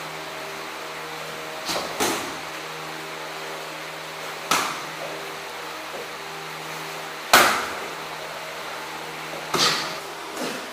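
Gloved strikes landing during MMA sparring: five sharp smacks at uneven intervals, two close together about two seconds in and the loudest about seven seconds in. A steady electrical hum runs underneath.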